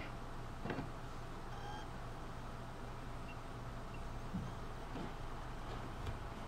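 Room tone: a steady low hum with a few faint clicks, one about a second in and a couple near the end.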